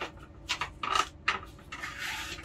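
Plastic plates of a manual capsule-filling machine being pushed together by hand to close the capsules: several short scuffs and clicks of plastic, then a longer rubbing scrape near the end.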